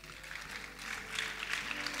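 Congregation clapping in response, over soft chords held steadily on an instrument.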